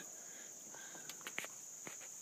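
Faint, steady high-pitched insect buzz, with a few soft ticks scattered through it.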